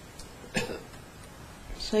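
A single short cough about half a second in, over low room noise. Near the end a woman's voice starts to speak.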